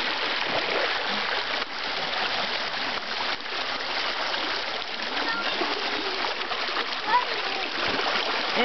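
Shallow creek water rushing steadily over a low rock ledge, a small waterfall, with a faint voice calling briefly over it about seven seconds in.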